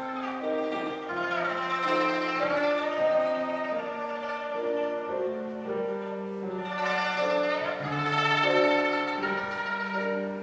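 Shudraga (shanz), the Mongolian three-stringed long-necked lute with a skin-covered body, playing a melody of held notes with piano accompaniment.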